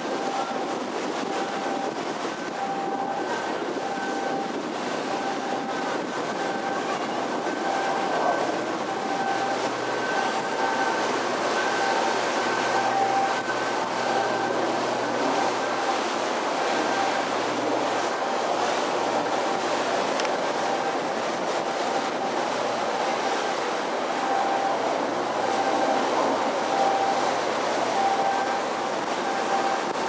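Steady running noise of a tour ship under way, with a faint high whine that comes and goes.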